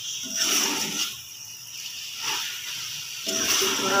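A metal spoon stirs and scrapes through chicken and bitter gourd frying in a metal pot, with sizzling that swells with each stroke.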